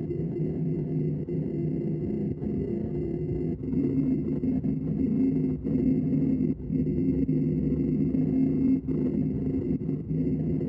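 Laguna Revo 18|36 wood lathe running while a bowl gouge hollows a spinning pignut hickory bowl blank: a steady humming drone of several held tones that grows louder about four seconds in as the cut bites harder, with a few brief dips.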